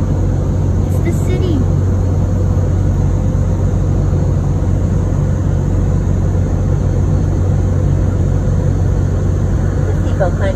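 Steady loud cabin noise of an airliner in flight: a low hum under an even rushing sound that does not change.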